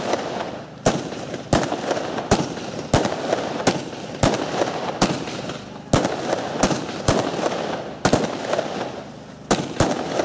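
Pyro Art "Ivaldi" fireworks battery firing shot after shot: sharp reports about one and a half times a second, a few coming in quick pairs, over a continuous hiss and crackle of burning effects.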